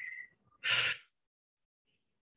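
A man's single short, sharp breath, just over half a second in.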